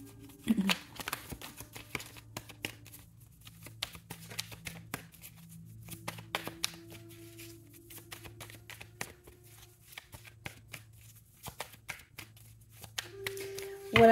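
A tarot deck being shuffled by hand: a long run of quick, soft card clicks and flicks. Quiet background music of low sustained tones plays beneath.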